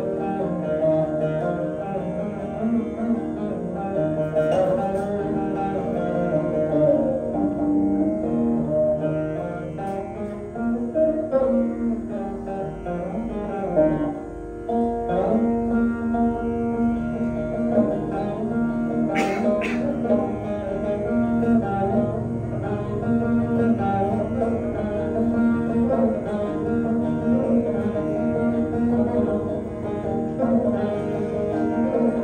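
Saraswati veena playing solo in raga Shankarabharanam, its plucked notes bending and sliding between pitches, with no drum.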